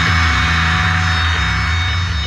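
Music from a brutal slam death metal track: a sustained low distorted chord with a steady hiss, ringing out and slowly fading after the last hit.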